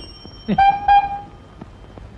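A single short horn toot, one steady note held for just under a second, starting about half a second in.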